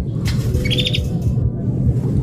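Sample-based electronic pop music playing, with a quick run of about five short, bird-like chirps over it in the first second.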